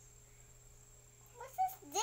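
Quiet room noise, then in the last half second short high-pitched vocal cries whose pitch rises and falls, the last one the loudest.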